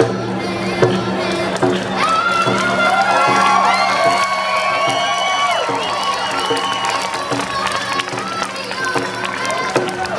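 Large stadium crowd cheering, with many voices calling out at different pitches at once over a steady low hum.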